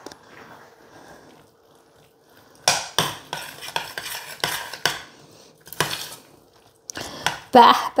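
Metal fork stirring corn, mushrooms and melting cheese in a stainless-steel pot, scraping and clinking against the sides in a run of strokes that starts about three seconds in. Before that there is only a faint rustle of grated cheese being sprinkled on by hand.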